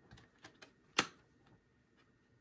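A plastic Blu-ray case handled by hand: a few light clicks, then one sharp click about a second in.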